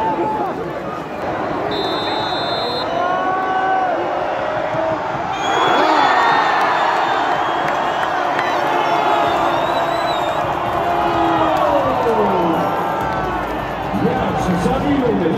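Football stadium crowd cheering a scored penalty in a shootout: the noise surges suddenly about five and a half seconds in and holds, with individual shouts and whoops from fans close by.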